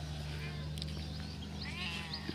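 Faint animal cries in the background, once early and again near the end, over a low steady hum.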